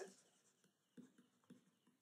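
Near silence, with two faint soft taps about half a second apart from a stylus on a tablet screen.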